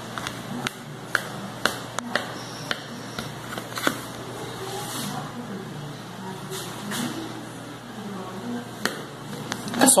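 A knife cutting a soft, moist cake in a metal baking pan, its blade knocking against the pan in a scattering of short sharp clicks.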